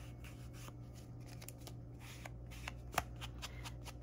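An ink blending tool's pad dabbing and rubbing along the edges of a paper card to distress them with ink: a run of light, irregular taps, with one sharper tap about three seconds in. A faint low hum runs underneath.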